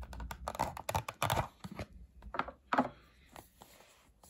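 Cardboard box being opened by hand: its end flap pulled free and the inner tray slid out. There is a quick run of papery clicks and scrapes through the first second and a half, then a few fainter ones.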